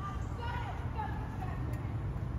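Faint distant voices over a steady low rumble of outdoor background noise.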